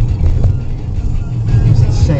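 Steady low rumble of road and engine noise inside a moving car's cabin as it drives along a city street.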